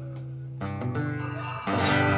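Live rock band with acoustic and electric guitars: a held chord dies down, a new strummed chord comes in about halfway, and the full band enters louder near the end.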